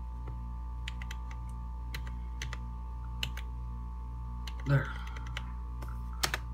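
Scattered sharp clicks at a computer, about a dozen spread irregularly, over a steady low electrical hum.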